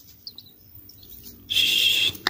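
Ciblek sawah (prinia) nestlings begging while being hand-fed crickets: a few faint high chirps, then, about a second and a half in, a loud high-pitched begging call lasting about half a second.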